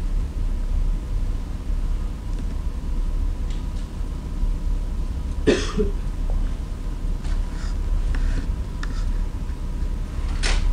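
A single cough about five and a half seconds in, over a steady low hum of room noise.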